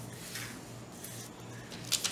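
Faint rustling of a paper sewing pattern as it is handled and shifted on a tabletop.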